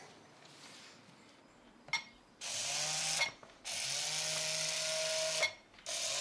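A small programmable bee robot's electric motors whirring as it moves across the floor, in two runs of about one and two seconds with a brief stop between them, each ending with a short click.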